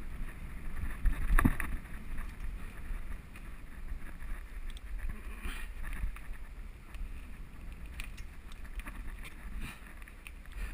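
Wind buffeting a helmet-mounted action camera's microphone over the steady rumble of a mountain bike rolling fast along a dirt singletrack. There is a louder knock about a second and a half in, and scattered clicks and rattles after it.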